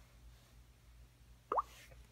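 Faint room hum, then about one and a half seconds in a single short plop that slides quickly up in pitch, like a water drop: the Samsung Galaxy S4's water-ripple unlock sound as the phone is unlocked.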